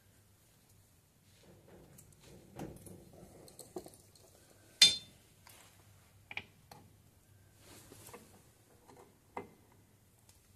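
Scattered light metallic clicks and taps from hands fitting a rear drum brake wheel cylinder and starting its mounting nuts behind the steel backing plate, with one sharp metal clink about five seconds in.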